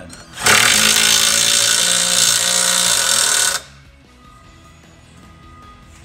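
A power tool runs in one steady, loud burst of about three seconds, starting and stopping abruptly.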